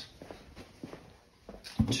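Footsteps across a concrete shop floor, with a few faint scattered knocks.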